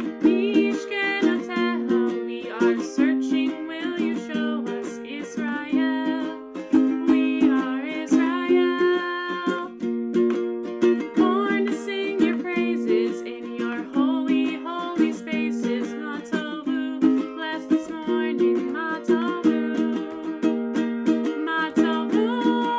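A woman singing a song while strumming a ukulele in a steady rhythm.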